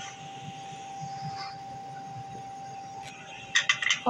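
Faint steady kitchen background hiss with a thin, high steady tone. A few quick light clicks near the end, a metal spoon against a ceramic bowl as ground red chili is tipped in.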